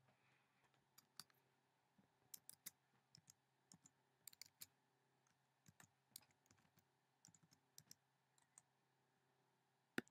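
Faint, irregular clicking of keys being pressed, over a low steady hum.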